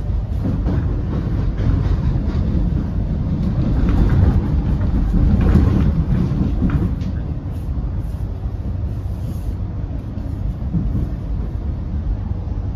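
Running noise inside an X'Trapolis electric multiple unit moving at speed: a steady low rumble of wheels on rail, with scattered clicks as the wheels cross rail joints and points, swelling loudest about four to six seconds in.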